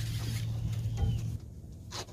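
Camera handling noise as the camera is moved to a new mount, over a steady low hum that cuts off about two-thirds of the way through.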